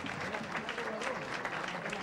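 Audience clapping steadily in a dense patter of many hands, with a few voices among the crowd.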